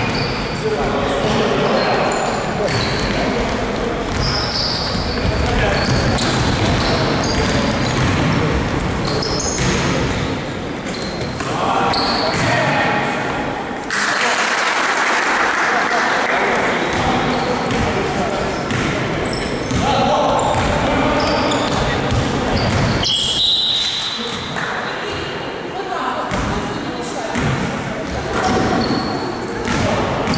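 Basketball being dribbled and bounced on a gym court, with players calling out and the echo of a large sports hall.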